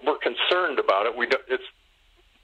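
A man speaking into a microphone, pausing about three-quarters of the way in.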